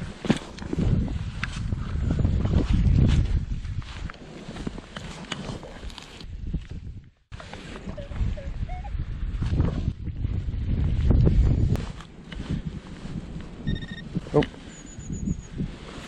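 Digging in turf and damp soil with a hand digging tool: irregular crunching and scraping as the blade cuts in and earth is lifted and broken up, with wind on the microphone. Near the end, a short electronic beep from the detecting gear.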